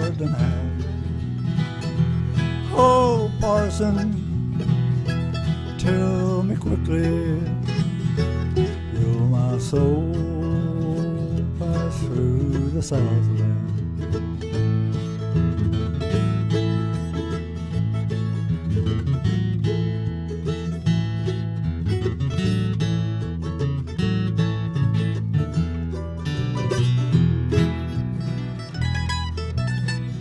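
Bluegrass band playing an instrumental break between verses: strummed acoustic guitar and electric bass under a lead melody line with bent notes.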